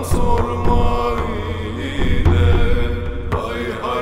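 Male voice singing a Turkish Sufi hymn (ilahi) in long, sliding, ornamented lines over low instrumental accompaniment.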